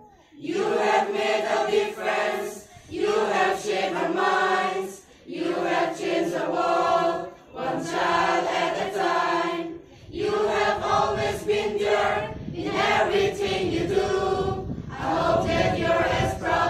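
A mixed choir of school boys and girls singing together in long held phrases, with brief pauses between lines during the first part.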